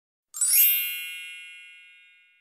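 A single bright metallic chime, struck about a third of a second in, then ringing out and fading away over nearly two seconds.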